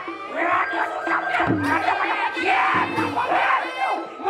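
Several voices shouting and calling out over one another, with Balinese gamelan music sounding underneath.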